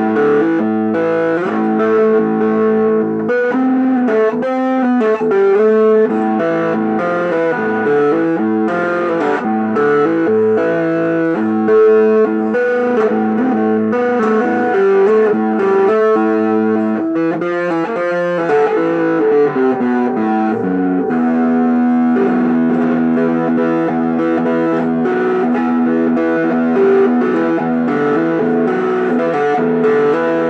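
Fender electric guitar played as a run of chords and single notes that ring into one another.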